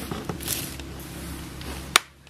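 Faint handling noise as the motorcycle's oil drain plug is worked out by hand, over a steady low hum, with one sharp click just before the end.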